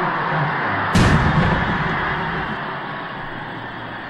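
A wheeled black-powder field cannon fires once about a second in, a sharp blast with a low boom that fades over a second or so. Under it runs a steady stadium crowd roar after a touchdown.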